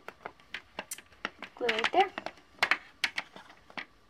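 Hands handling and pressing glued felt, making a scatter of small clicks and taps, with a short wordless vocal sound about halfway through.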